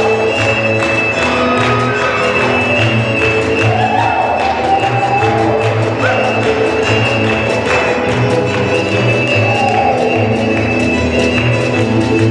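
Fiddle-led dance music with a steady beat, with the quick, even tapping of clogging shoes on the stage.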